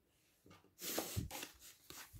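Tarot cards sliding and being laid on a table, soft papery rubs with a light tap or two.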